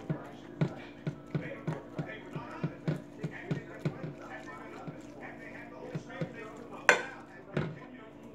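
Metal spoon patting and spreading potato salad into a white casserole dish, with soft knocks of the spoon on the salad and dish about three times a second, easing off midway, then a sharper clink near the end.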